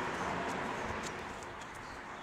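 A few soft footsteps on grass, growing fainter as the walker moves away, over a steady outdoor hiss.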